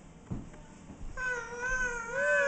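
A toddler's animal-sound imitation: one long, high vocal call that starts about a second in, rising slightly and then falling. A soft thump comes just before it.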